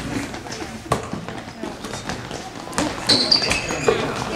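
A basketball bouncing on a gym floor: a few scattered thuds, with voices in the background.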